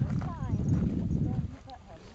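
Wind buffeting the microphone on an exposed summit: an uneven low rumble that eases off near the end, with faint voices of people talking over it.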